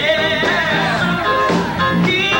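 Group of men singing together into microphones over amplified music.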